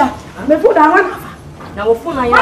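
A woman's loud, raised voice speaking in Twi, in two bursts with a short pause about halfway.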